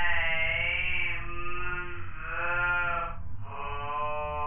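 A man's voice saying "I'm" stretched out into a long, wavering held tone. Just after three seconds in it breaks and turns into a drawn-out "bold".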